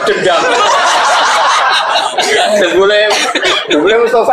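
A man talking, with chuckling mixed in.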